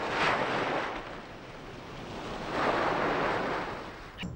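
Sea surf breaking and washing onto a beach. The sound swells at the start, eases, then swells again about two and a half seconds in.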